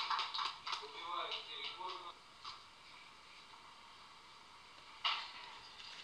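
Faint voices of people talking in a hall, fading out after about two seconds into quiet room tone, with a short burst of noise about five seconds in.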